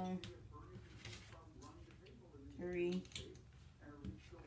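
Light clicks and rustling as dressmaking shears are picked up and handled over folded sheer fabric. A woman's voice sounds briefly, without clear words, right at the start and again about three seconds in.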